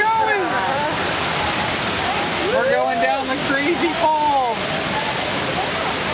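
Log-flume water chute pouring down its channel: a loud, even rush of falling water.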